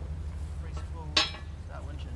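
A single sharp metallic clink about a second in as the steel hook end of a winch cable is handled and hooked up, over a steady low hum.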